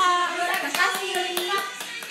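Voices with several sharp hand claps among them.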